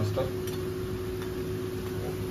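Masala vadas deep-frying in hot oil in a kadai: a steady sizzle with a few faint crackles, over a steady low hum.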